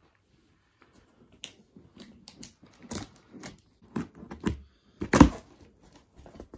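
A cardboard shipping box being opened by hand: a run of short, irregular crackles and scrapes from the packing tape and cardboard flaps, with one loud rip about five seconds in.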